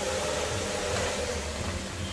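Potato pieces frying in hot oil in a wok, the oil sizzling steadily as they turn golden. A faint steady hum runs underneath.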